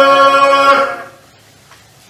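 Congregation singing a cappella, holding the final chord of a hymn and releasing it about a second in; the chord fades briefly in the room's reverberation.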